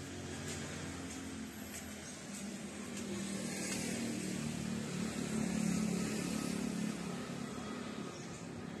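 A low engine hum that swells about halfway through and eases off near the end, like a motor vehicle passing.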